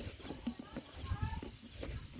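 Small irregular clicks and knocks of a hand working in the plastic strainer at the mouth of a sprayer tank, over a low rumble, with a faint voice about a second in.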